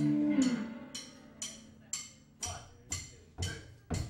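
A held chord dips in pitch and dies away in the first half second. Then the drum kit keeps a steady, sharp click, about two a second, counting the band into the song. About halfway through, a low thump joins some of the clicks.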